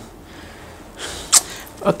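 A man's short, sharp intake of breath about a second in, just before he starts speaking again.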